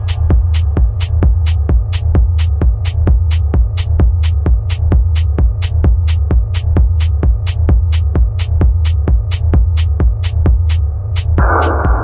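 Techno music: a deep, throbbing kick and bass line with a sharp click about four times a second. Near the end a band of hissing mid-range synth noise comes in over the beat.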